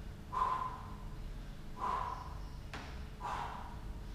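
A man's sharp, forceful breaths out, three of them about one and a half seconds apart, one with each knuckle press-up.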